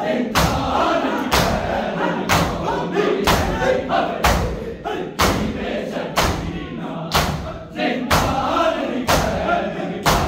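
Matam: a group of bare-chested men striking their chests with their hands in unison, about one loud slap a second. Men's voices chant a mourning lament between the strikes.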